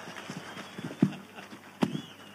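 Two short knocks, about a second apart, the second one louder and sharper, against a quiet hall.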